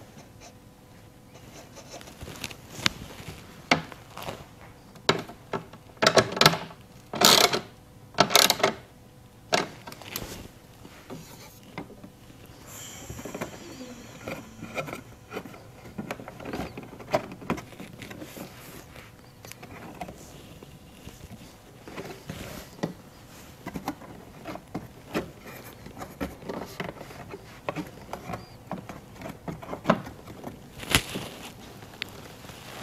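Hands working a carbon-fibre side splitter into position under the car: scattered light knocks, clicks and rubbing, with a few louder scraping bursts about six to eight and a half seconds in.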